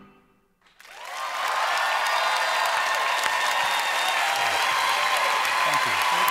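The band's final note fades into a brief silence, then studio audience applause swells up about a second in and holds steady.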